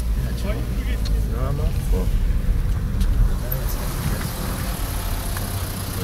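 Low rumble of a car running, heard from inside its cabin, heaviest for the first few seconds and easing after about four seconds, with faint voices over it.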